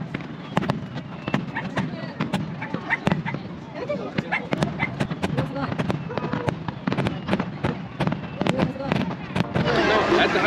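Aerial fireworks display: shells bursting overhead in a rapid, irregular run of sharp bangs and crackles, several a second.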